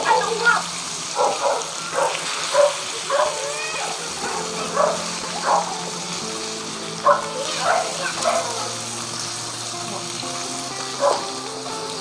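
Pieces of fermented fish frying in a steel wok, a steady sizzle as a wooden spatula stirs them. Over it run sustained background-music notes, and short pitched calls break in about every second.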